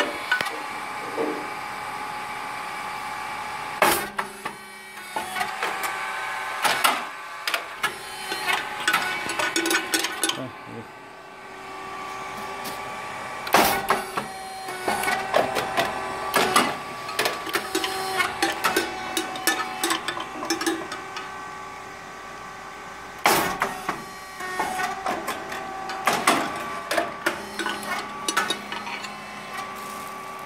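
Rice cake popping machine running its cycle: a sharp pop about every ten seconds as the heated molds puff a round rice cake, with mechanical clatter and a steady motor hum in between.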